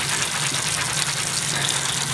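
Bathroom faucet running steadily into the sink basin, the stream splashing over soapy hands being scrubbed under it.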